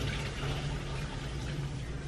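Hot pasta water being poured from a saucepan into a metal colander in the sink, a steady splashing rush of water draining off cooked fusilli, with a steady low hum underneath.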